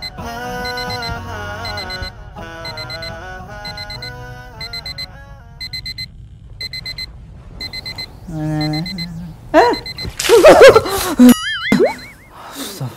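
A digital alarm clock beeping in rapid clusters of short, high beeps, over background music that fades out about halfway through. Near the end the beeping gives way to a man's loud, wavering groan as he wakes.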